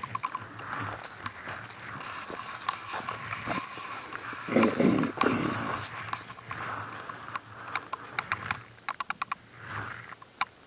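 Footsteps crunching and crackling through frozen leaf litter and thin snow, with small clicks throughout. There is a louder burst of scuffing about halfway through, and a quick run of sharp clicks near the end.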